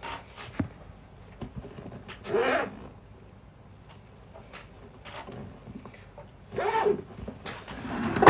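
Two brief wordless vocal sounds, one about two and a half seconds in and another near seven seconds, over faint handling clicks in a quiet room.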